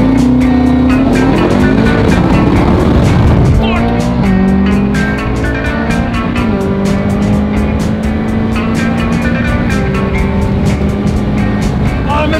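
Ferrari sports car engine accelerating hard through the gears: its pitch climbs, then drops at upshifts about four, six and a half and ten seconds in.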